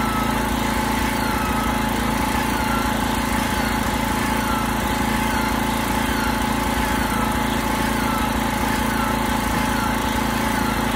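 A steady motor hum at a constant level, with a faint high chirp that repeats about every two-thirds of a second.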